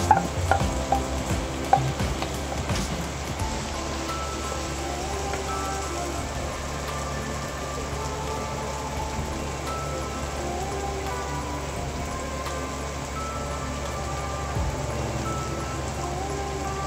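Food sizzling in a frying pan, with a few sharp knocks of a wooden spatula against the pan in the first couple of seconds, then a steady sizzle under soft background music.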